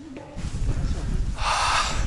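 A man lets out one hard, breathy gasp about a second and a half in, out of breath from a hard climb. A low rumble on the microphone runs underneath.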